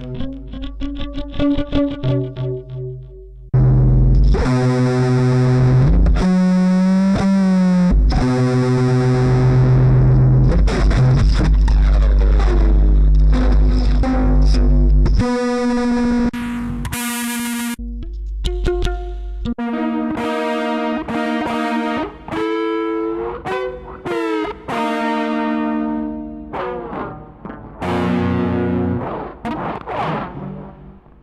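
Rubber-band guitar with a piezo pickup, played through a guitar multi-effects pedal and small amp: plucked, fretless notes that slide and waver in pitch, heavily distorted. A loud, long-held stretch gives way about halfway through to a short burst of noise as the effect patch is switched, then shorter, choppier notes in a different tone.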